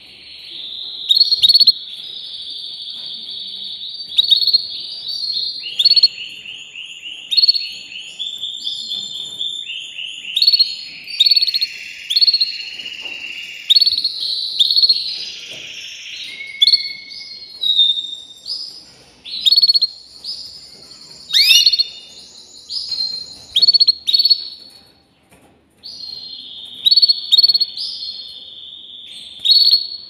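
Canary singing a long, continuous song of trills and rolling phrases, broken every couple of seconds by short, loud, sharp notes, with a brief pause near the end.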